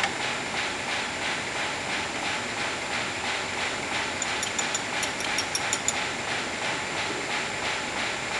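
Sheetfed offset printing press (Komori Lithrone L426) turning over slowly during plate loading, a steady rhythmic mechanical beat about three times a second over a constant high whine. A few light metallic ticks come near the middle.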